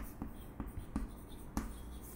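Chalk writing on a chalkboard: a string of short taps and light scrapes as letters are written, the sharpest stroke about one and a half seconds in.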